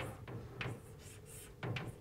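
Chalk writing on a blackboard, faint, with a few light taps and scrapes as the strokes are made.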